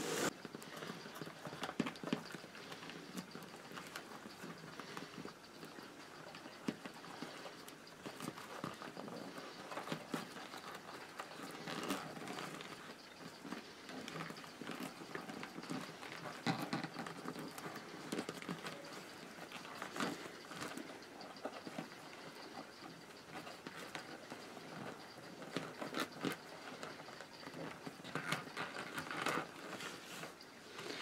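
Rolled newspaper tubes rustling and tapping against a cling-film-wrapped plastic basin as they are joined and woven by hand, in irregular light clicks and rustles.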